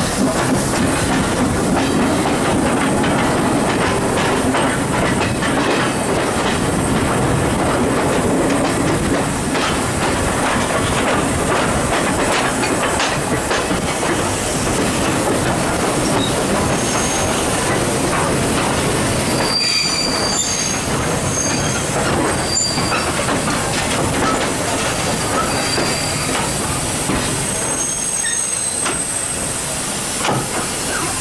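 GNR V class 4-4-0 steam locomotive No.85 Merlin rolling slowly along the track, heard from its own footplate as a steady rumble and clatter of wheels on rails. Short high-pitched wheel squeals come and go through the second half, and the noise eases a little near the end as it draws towards the coaches.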